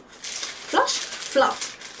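Clear plastic wax-melt wrapper crinkling as it is handled, with two brief vocal sounds about a second apart.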